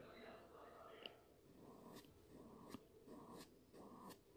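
Near silence: faint room tone with a few soft, faint sounds and light clicks.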